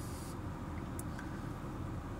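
Steady low rumble inside a car's cabin, with a faint click about a second in.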